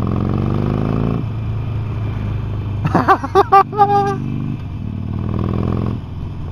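Harley-Davidson Sportster Forty-Eight's 1200 cc air-cooled V-twin running under throttle on the road, heard from the rider's seat. It eases off about a second in and picks up again near the end.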